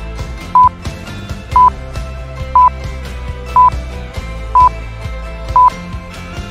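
A short electronic beep at one pitch, repeating evenly once a second, six times, over steady background music.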